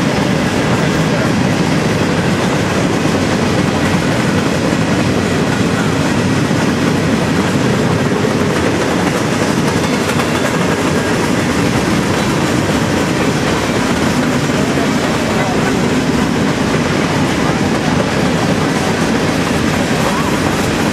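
Freight train cars rolling past at speed: a loud, steady noise of steel wheels on rail with the rattle of the passing cars.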